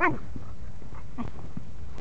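A dog playing rough gives a short yelp that falls in pitch at the start, followed by a couple of fainter short vocal sounds about a second in.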